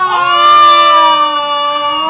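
A high voice holding one long note that slides slightly down in pitch.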